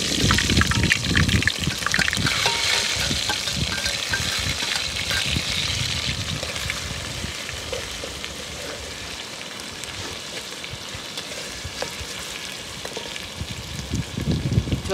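Sliced onions and chopped chilli frying in hot oil in a steel pot, sizzling loudly at first and settling to a quieter, steady sizzle over several seconds. A metal spoon scrapes and clinks against the steel plate and pot as the food is tipped in and stirred.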